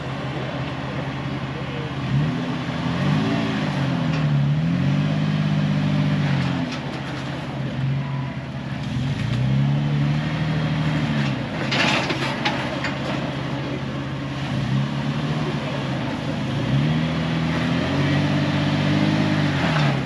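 Toyota FJ Cruiser's V6 engine crawling over boulders, its revs rising and falling in repeated swells of a second or two under a steady low engine note. A short burst of rough noise comes about twelve seconds in.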